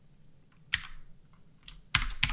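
A few separate keystrokes on a computer keyboard, about a second apart, with two close together near the end.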